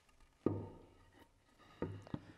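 A wooden board knocked against a table saw's top: one dull knock about half a second in, then two lighter knocks near the end.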